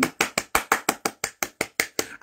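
One person clapping her hands in a fast, even run, about a dozen claps in two seconds.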